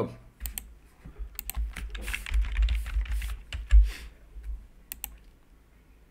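Typing on a computer keyboard: an irregular run of key clicks with some low knocks on the desk, stopping about five seconds in.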